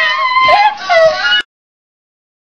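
A person's high-pitched voice whining in a few drawn-out, wavering notes, cut off abruptly about one and a half seconds in.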